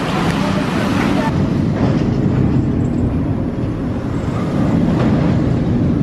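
Zierer tower roller coaster train running along its steel track close by, a steady low rumble with a rushing noise over the first second as it passes.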